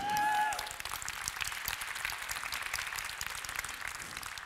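Audience applauding: a dense patter of many hands clapping, loudest in the first half second and then holding steady.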